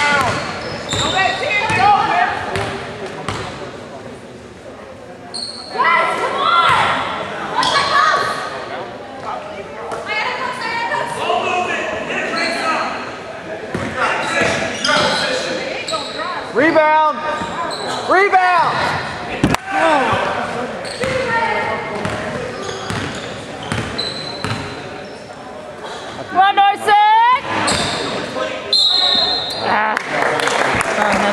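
Basketball game in a gymnasium: the ball bouncing on the hardwood court among spectators' talk and shouts, with the hall's echo.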